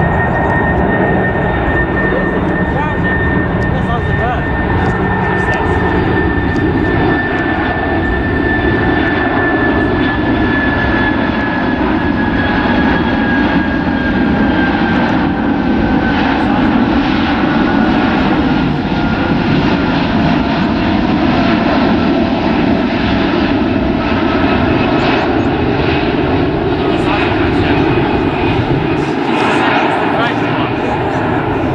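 Boeing 747 freighter's four jet engines on landing approach: a loud, steady roar with a high whine that slowly falls in pitch as the jet comes overhead.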